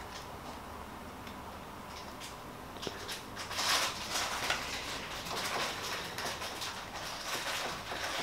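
Faint handling noise of a flexible silicone mould being bent and pressed with the fingers to pop polymer clay cabochons out: soft rustling and small clicks, starting about three seconds in.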